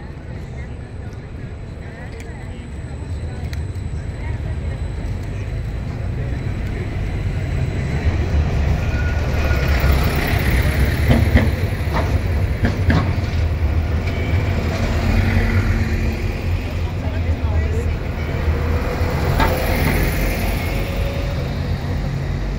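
Street traffic: a city tram and a double-decker bus pass close by, a low rumble that builds over the first ten seconds and stays loud, with a few clicks around the middle.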